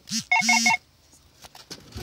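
Short electronic beeping: one brief tone, then three quick beeps run together, all over within the first second.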